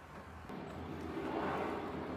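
A vehicle passing in the background: steady noise that grows louder from about half a second in and swells through the middle.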